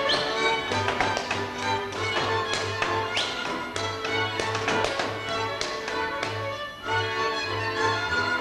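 Fiddle-led Hungarian folk dance music played live, with a regularly pulsing bass. Dancers' boots tap and stamp on the wooden stage over it.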